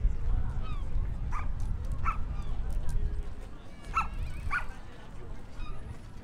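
Four short, high-pitched animal calls in two pairs, over a steady low rumble of wind on the microphone.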